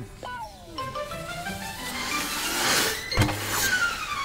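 Cartoon score and sound effects: a run of falling, whistle-like glides, with a hissing whoosh swelling toward the middle and a sharp knock with a low thud about three seconds in. It goes with a message capsule shooting through a pneumatic tube.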